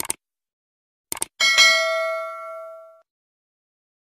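Subscribe-button animation sound effect: two quick clicks, another pair of clicks about a second in, then a notification bell chime with several ringing tones that fades out by about three seconds in.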